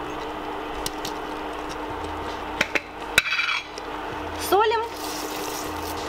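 Cubes of marzipan dropped into a stainless steel soup pot onto bread and almond flakes: a few light clicks and knocks, with a short rattle just after three seconds in, over a steady low hum.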